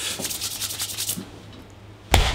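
Rustling, rubbing noise that fades away over about the first second, over a faint steady low hum.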